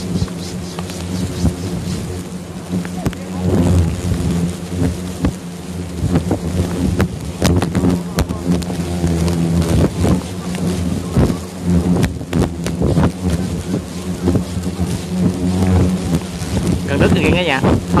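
A dense swarm of hornets buzzing as one steady, low drone, stirred up around their nest as it is being taken, with scattered knocks and crackles over it.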